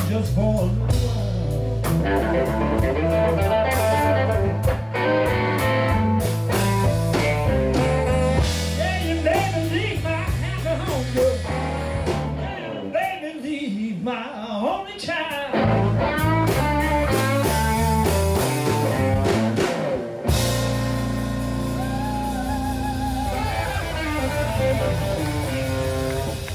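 Electric blues band playing live, an electric guitar leading over bass guitar and drums. The bass and drums drop away for a few seconds about halfway through, then the band comes back in.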